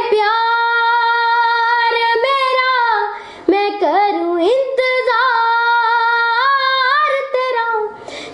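A young girl singing a Punjabi song without accompaniment. She holds long notes with quick ornamental turns between them and takes a short break for breath about three seconds in.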